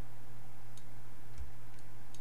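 Three sharp computer mouse clicks over a steady low electrical hum.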